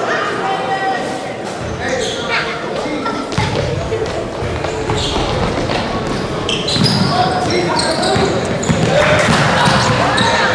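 Echoing gymnasium sound during a youth basketball game: a basketball bouncing on the hardwood floor under a steady hubbub of players' and spectators' voices and calls, getting louder near the end.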